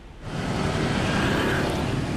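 Street traffic ambience: a steady wash of road noise from passing vehicles that comes in about a quarter of a second in.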